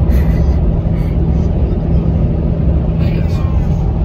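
Steady low rumble of road and engine noise heard inside the cabin of a car driving at highway speed.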